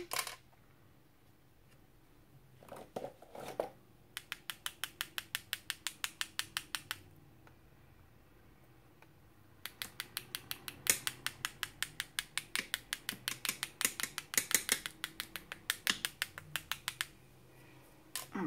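Quick, even plastic clicks, about seven a second, of a water brush being tapped against a pen to spatter metallic gold watercolour onto a card. The clicks come in two runs of several seconds with a short pause between them.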